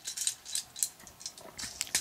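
Irregular light clicks and taps of small plastic toy robot parts being handled, folded and pushed into place.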